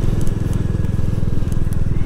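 Royal Enfield Classic 350's single-cylinder engine running steadily at cruising speed, with an even exhaust beat.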